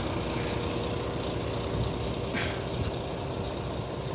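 Steady low hum of a Volvo 11-litre diesel coach engine idling, with faint steady tones over it. A brief scuff about two and a half seconds in.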